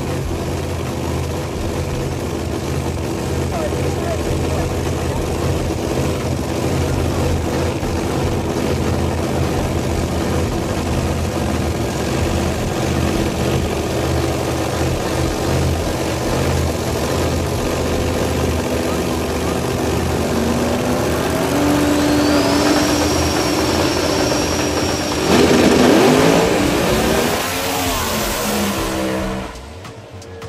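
Drag cars' engines rumbling at the line, with a high whine that rises and then holds. About 25 seconds in comes a loud burst of engine noise as the cars launch, and the engine pitch then falls away as they head down the track.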